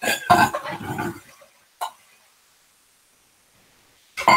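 A person's short throaty vocal sound lasting about a second, then a single sharp click, after which the sound cuts out entirely.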